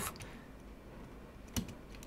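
A few faint computer keyboard keystrokes, with a short cluster of key clicks about a second and a half in.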